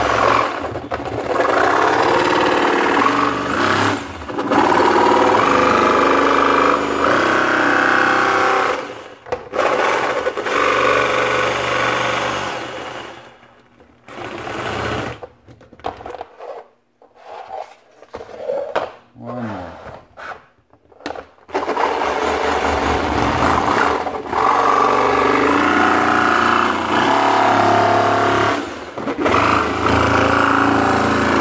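Jigsaw fitted with a fine metal-cutting blade cutting through a thin plastic storage-container lid, running in long steady passes with brief stops. About halfway through it stops for several seconds, leaving only scattered quieter sounds, then cuts again.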